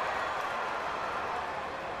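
Large ballpark crowd cheering as a run scores, a steady wash of noise from the stands that fades slightly.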